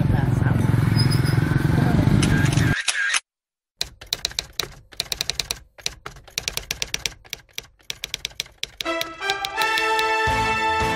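Typewriter sound effect: a rapid, uneven run of key clacks lasting about five seconds. Before it, a steady low outdoor rumble on the microphone cuts off suddenly about three seconds in.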